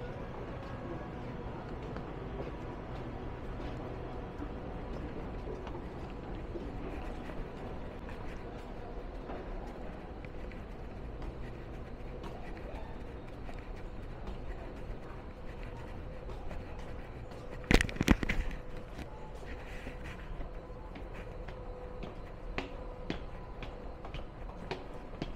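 Indoor transit-station background: a steady low hum with a faint constant tone, under light footsteps on a hard floor. About three-quarters of the way through comes a brief cluster of loud knocks, and the footstep clicks grow more frequent near the end.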